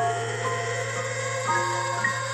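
Soft instrumental music: sustained notes entering one after another over a steady low hum.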